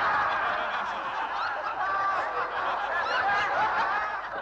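A theatre audience laughing, many voices at once in a steady mass of laughter.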